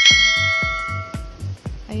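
A bright bell-like chime rings once and fades away over about a second and a half, over background music with a steady beat.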